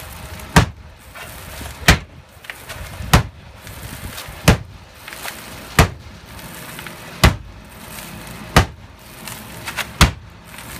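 A sledgehammer striking a wooden window secured with a twin bolt, about seven heavy blows at a steady pace of roughly one every 1.3 seconds.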